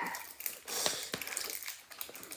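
Crinkling and scattered small clicks of plastic wrappers being worked off small plastic toy capsules by hand.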